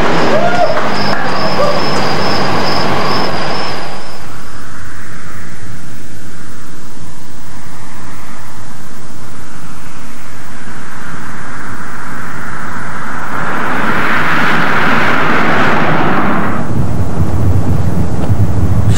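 A car approaching along an open road and passing: a tyre and engine rush swells over a few seconds past the middle of the stretch and falls away. It is followed near the end by a steady low engine drone from inside the old Cadillac.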